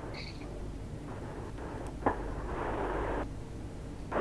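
Dead air on a broadcast: a faint hiss from an open audio line, with a single click about two seconds in. The hiss cuts off suddenly just after three seconds.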